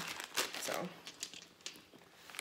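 Crinkling and rustling of purse contents being handled, with paper receipts among them, and a scatter of light clicks. It is busiest in the first second and fades toward the end.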